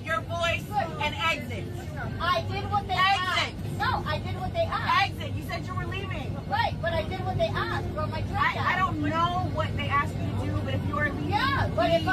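Speech: voices arguing, one telling another to lower her voice and exit. Under it runs the steady low hum of the airliner cabin.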